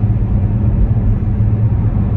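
Steady low rumble of a car on the move, heard from inside the cabin: road and engine noise with no breaks.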